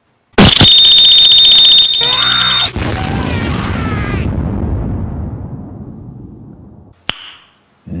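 Cartoon explosion sound effect, deafeningly loud and distorted: a sudden blast with a shrill, buzzing high tone for over a second, then a rumble that slowly dies away over about five seconds.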